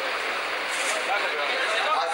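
A man speaking into a handheld microphone over a steady, dense background hubbub.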